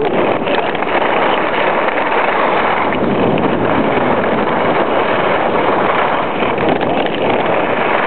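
Steady, loud rushing of wind over a compact camera's microphone while skiing down a groomed run, mixed with the hiss of skis sliding on the snow.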